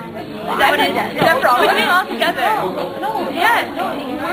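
Speech: students talking in a classroom, one voice leading with chatter from others.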